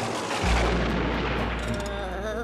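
A deep boom about half a second in that trails off into a long, slowly fading rumble, with music coming in near the end.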